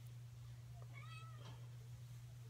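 A cat meowing once, faintly: a short rising-and-falling call about a second in, over a steady low hum.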